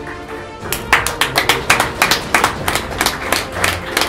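Hand clapping from a small group of people, starting about a second in as a quick, uneven run of claps, over steady background music.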